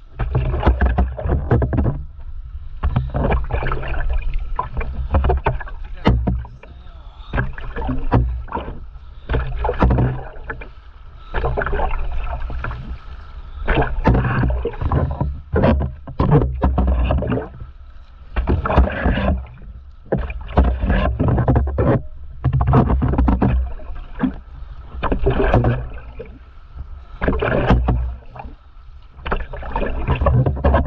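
Stand-up paddleboard paddle strokes splashing and pulling through the water, one roughly every two seconds.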